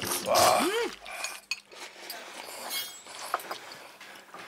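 Noodles being slurped from a fork and bowl, with light clinks of metal forks against bowls.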